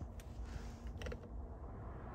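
A few faint mechanical clicks and a creak, one early and a short cluster about a second in, over a low steady hum.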